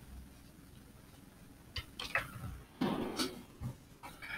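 A few soft clicks and knocks in the second half, from a computer keyboard and mouse being handled on a desk.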